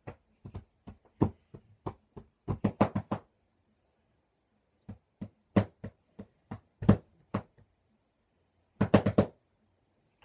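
Drumsticks striking practice pillows in a simple beat: sharp clicking strikes in short, uneven groups, with a pause in the middle and a quick flurry of about five hits near the end.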